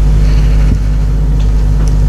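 Steady low room hum, even and unbroken, with no speech over it.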